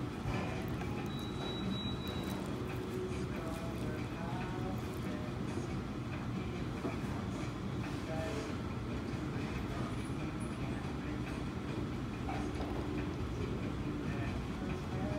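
Restaurant room noise: a steady low rumble with faint, indistinct voices in the background.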